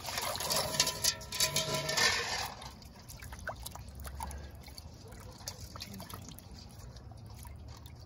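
Water splashing and sloshing in a stainless steel bowl as hands rinse a skinned squirrel carcass. The splashing is louder for the first couple of seconds, then settles to quieter sloshing and drips.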